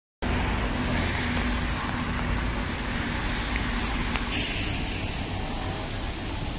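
Steady road-vehicle noise, with a faint engine hum in the first half; the hiss turns brighter about four seconds in.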